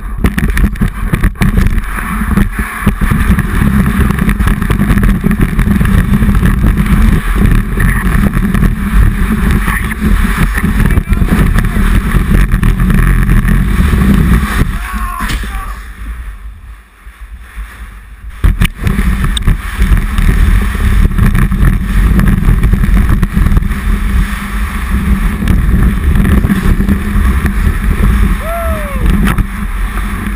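Snow-surf board sliding down a snowy slope, heard from a camera mounted on the board: a loud, continuous scraping rumble of the board over the snow, dropping away for a few seconds in the middle before picking up again.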